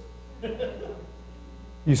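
Steady low electrical hum, like mains hum in a sound system.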